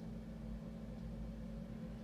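Quiet room tone: a steady low electrical hum with faint hiss, and no distinct sounds.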